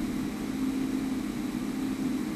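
Steady low hum with a faint steady tone underneath and no other events: background room tone in a pause between speech.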